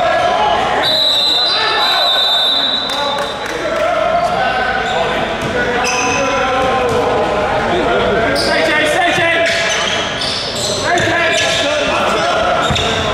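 Basketball game sounds in a gym: a ball bouncing on the court amid players' voices, echoing in the large hall. A steady high tone sounds from about a second in for a couple of seconds.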